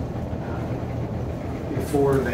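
Steady low room hum with no distinct event.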